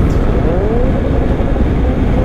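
BMW GS Adventure motorcycle cruising at speed: a steady engine drone under a haze of wind and road noise, the engine note rising a little about half a second in.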